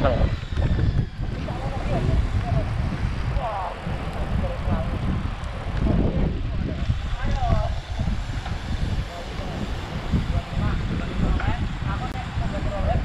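Wind rumbling over a bike-mounted microphone, with tyre noise from a road bicycle riding along a paved path.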